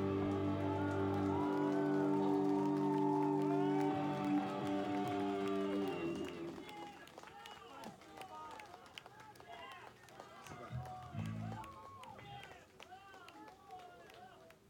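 A rock band's final chord is held for about six seconds after the song's last hit, then stops. The audience cheers and shouts over it, and the shouting goes on more sparsely once the chord has stopped.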